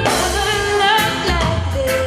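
Live lovers rock band: a woman sings a melody over bass guitar, drum kit and electric guitar, with drum hits marking the beat.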